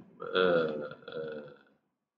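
A man's voice making two drawn-out hesitation sounds, the first about twice as long as the second, after which the sound cuts off to dead silence.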